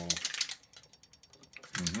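Faint, rapid, evenly spaced clicking of a flashing strobe light. A drawn-out voice ends just after the start, and a murmured "mm-hmm" comes in near the end.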